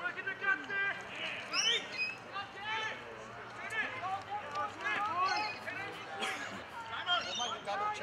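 Distant shouts and calls from players across an open football oval, too far off to make out words, coming in short bursts throughout.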